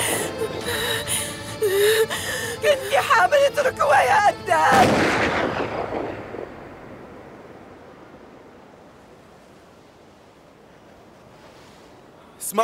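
Shotgun blasts over a woman's frantic shouting and music, the last and biggest blast about five seconds in. After it everything fades to a low hush.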